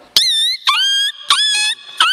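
A boy's vocal mimicry into a microphone: three short, shrill squeaky calls, each starting sharply, dipping and then holding a high tone.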